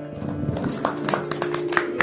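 Small audience applauding by hand, the claps starting a moment in and coming thick and irregular, over the steady drone of the tanpura that carries on beneath.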